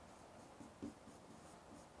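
Faint scratching and light tapping of a pen writing Chinese characters on an interactive display screen, a few small strokes with one clearer tap a little under a second in.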